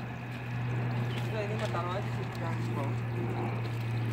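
Faint voices in the background, a few words about a second and a half in, over a steady low hum.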